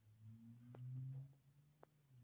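Near silence: a faint low hum that swells and fades, with two faint clicks about a second apart.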